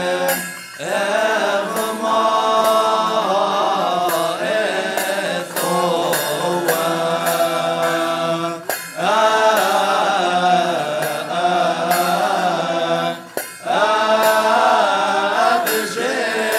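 Choir of deacons chanting a Coptic Orthodox hymn, with long drawn-out melodic phrases broken by brief pauses for breath.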